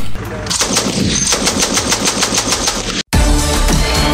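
Laska K-2 12.7 mm heavy machine gun firing one long burst of rapid, evenly spaced shots. The burst cuts off suddenly about three seconds in, and a music sting follows.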